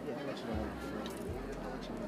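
Faint voices over a low room hum.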